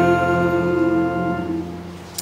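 The last held chord of a keyboard accompaniment at the end of a congregational song, fading away over about a second and a half.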